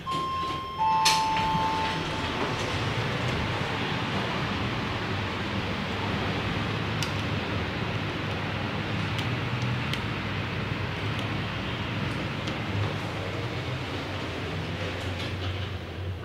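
Otis elevator car chime sounding two falling notes, with a sharp click about a second in. This is followed by a steady rushing noise with a low hum inside the glass car.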